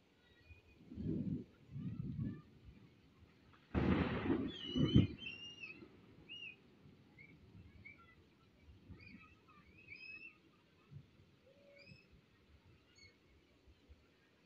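Rain falling steadily on a paved street, with scattered short high chirps and a loud burst of noise about four seconds in.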